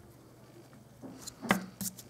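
Faint rubbing of a rubber eraser on drawing paper, erasing a pencil line, followed by two light knocks on the tabletop about a second and a half in.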